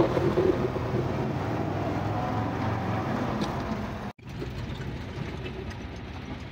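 Cab noise of a moving GAZ-53 truck: its V8 petrol engine running steadily under a low hum, with road noise. The sound cuts out for an instant about four seconds in, then carries on a little quieter.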